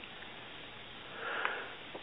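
A man's faint breath drawn in through the nose, a soft sniff about a second in, over a low steady hiss.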